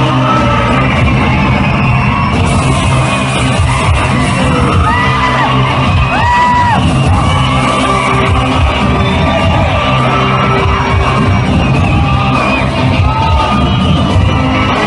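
Film music playing loudly in a reverberant cinema hall while the audience yells, whoops and cheers. Two sharp whistles stand out about five and six seconds in.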